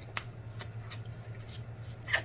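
Faint, scattered clicks and crackles of snow crab leg shells being handled and eaten close to the microphone, over a low steady hum.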